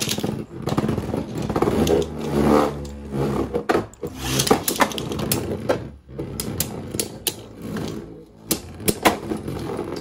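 Two Beyblade Burst tops, Astral Spriggan and Golden Dynamite Belial, whirring as they spin on a plastic stadium floor, with a run of sharp clacks as they collide, most of them in the second half.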